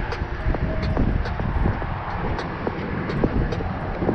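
Road traffic on the bridge: a steady low rumble of passing vehicles.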